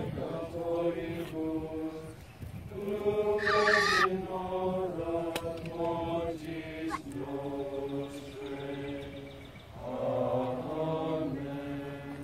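A priest's voice chanting the Latin prayers of the brown scapular enrollment in long, level held notes on a few pitches. A brief higher, brighter sound cuts in about three and a half seconds in.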